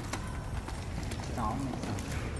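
Indistinct voices in a room, with irregular light clicks and taps throughout and a brief voice-like fragment about one and a half seconds in.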